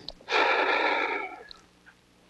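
A long, breathy exhale like a heavy sigh, lasting about a second.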